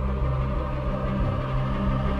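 Dark, ominous background music: a sustained low drone of held bass tones with no clear beat.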